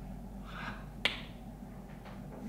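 A single sharp click about a second in, preceded by a faint breath, over a steady low room hum.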